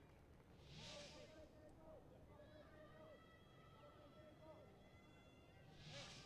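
Near silence: faint stadium ambience with distant voices from the pitch and stands, and two soft hissy swells, about a second in and near the end.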